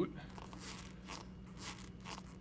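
Pleated boot on a standard RCD manipulator tong crinkling as it compresses and moves while the tong is worked, in about three faint strokes. The sound is the friction of the boot's inner web against the tong's motion.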